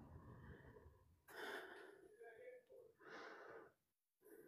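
Near silence: quiet room tone with two faint breaths, about a second in and again near the end.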